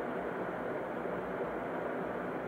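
Steady, even background hiss: the room tone and noise floor of a home voice recording.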